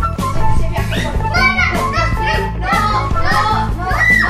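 Background music with a steady beat, over which a young child's high-pitched excited cries start about a second in and run on in short bursts.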